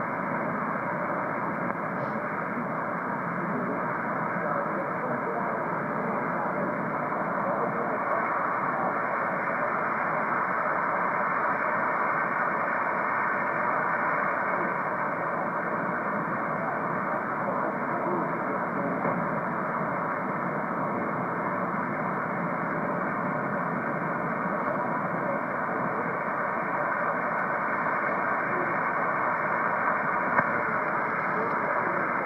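HF amateur radio receiver audio on the 40-metre band, played through a Heil Parametric Receive Audio System equalizer and powered speaker. It is steady static cut off sharply above the upper voice range, with a weak voice buried in it, too far down in the noise to make out the words.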